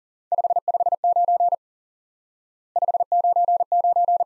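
Morse code sent as a steady tone of about 700 Hz at 40 words per minute: two groups about a second apart, spelling the RST signal reports 559 and 599. Each group opens with five quick dits for the 5, followed by the longer dah-heavy 9s.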